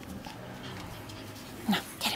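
Shih Tzus playing rough over a tug game: a soft low dog growl running under, then a short sharp yip near the end.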